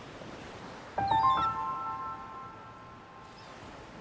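Soft background music: about a second in, a few held notes enter one after another, stepping upward in pitch, and slowly fade away.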